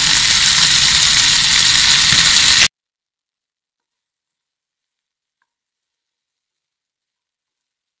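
Baby potatoes in masala sizzling in hot oil in a non-stick pan just after a splash of water has gone in, a steady hiss for about two and a half seconds. Then the sound cuts off suddenly to dead silence.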